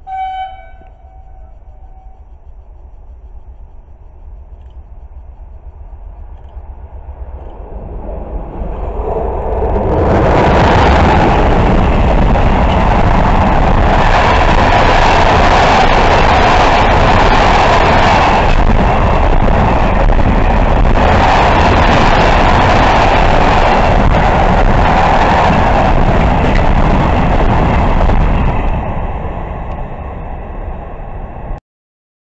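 An electric locomotive's horn gives a short blast at the start. Then a long container freight train approaches and passes close by, its wagons rolling past with loud, steady wheel noise on the rails. The noise builds over about ten seconds and tails off near the end.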